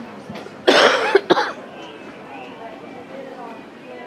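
A person coughing close by: one loud cough just under a second in, followed by a shorter one, over faint background chatter.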